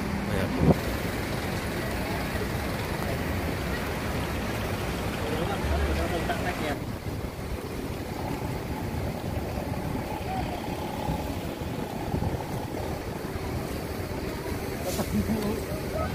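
Outdoor ambience of a busy coach park: a steady rush of vehicle and wind noise with indistinct voices in the background. The sound changes abruptly about seven seconds in.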